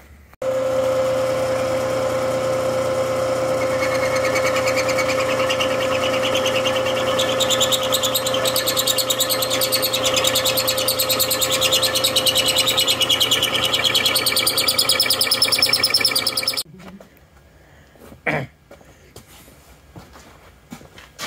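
Milling machine spindle running a countersink cutter into the bolt holes of a welded steel transmission adapter plate: a steady machine hum under a wavering higher cutting whine. It stops abruptly near the end, followed by a single faint click.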